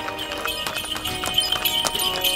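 Horse hooves clip-clopping as a horse draws a carriage, a quick run of sharp hoof strikes, over background music with held tones.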